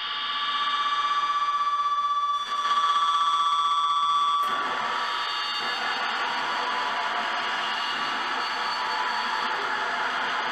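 Noise music from a contact-miked handmade wing instrument scraped with scissors and run through effects. Several steady high tones ring, dipping briefly about two and a half seconds in, then change at about four and a half seconds into a dense, rough hiss that holds on.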